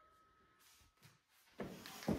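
Near silence: room tone, with a faint sudden knock or shuffle near the end.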